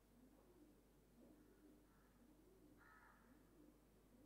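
Near silence: faint room tone with soft, repeated low cooing calls of a pigeon, each rising and falling in pitch.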